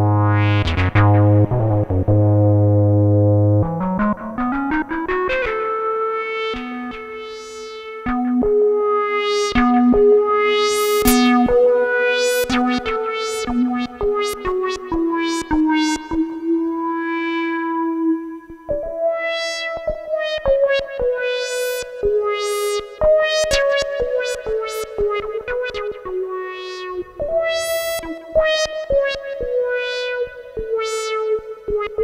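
Behringer DeepMind 12 analog synthesizer playing a monophonic patch: a low held bass note glides up about four seconds in, then a single-note melody follows, with the notes sliding from one pitch to the next.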